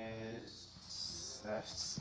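Computer-resynthesized voice from a phase-vocoder sonogram: a held, buzzy frozen tone of the spoken phrase that cuts off about half a second in. Short garbled snatches of the same voice follow near the end, played backwards.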